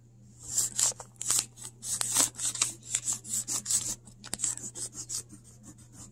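A peeled wax crayon held sideways, rubbed briskly back and forth over paper laid on a leaf: a quick run of short scratchy strokes, lighter in the second half.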